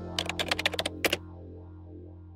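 Keyboard typing sound effect: a quick run of about ten key clicks in under a second, then one final keystroke just after a second in, over a low, steady music pad.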